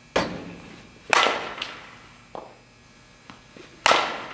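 Softball bat hitting balls: three sharp cracks, just after the start, about a second in and near the end, the later two with a ringing edge, and fainter knocks between.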